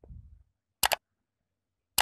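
Sound effects of a subscribe-button animation: a short mouse click a little under a second in, then another click and the start of a bell ding right at the end.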